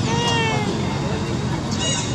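A short high-pitched cry that slides down in pitch and then holds, followed near the end by a second brief high squeak.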